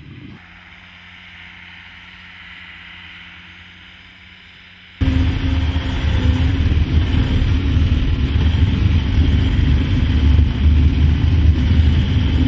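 ALLTRACK AT-50HD tracked carrier heard from outside, a moderate steady engine hum, as it climbs a snowy slope. About five seconds in, the sound cuts suddenly to loud, steady engine and track rumble inside its cab while it drives over snow.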